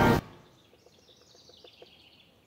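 Background music cuts off abruptly a moment in, leaving faint outdoor ambience with faint high chirping.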